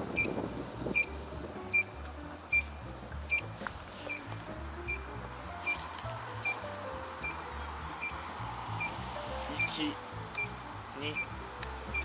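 A short, high beep repeating at an even pace, about five beeps every four seconds: an electric scooter's turn-signal beeper while the scooter waits at an intersection. Background music with a pulsing bass runs underneath.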